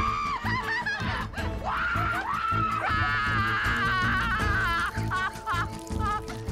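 Background music: a song with a singing voice over a steady beat and bass.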